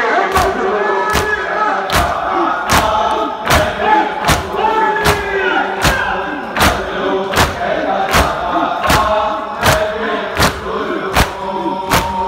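Chest-beating (matam) by a crowd of mourners, with palm slaps landing in unison about every three-quarters of a second. Over the slaps, many men chant a nauha lament together.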